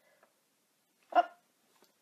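Near silence, broken about a second in by a single short spoken exclamation, "Oh".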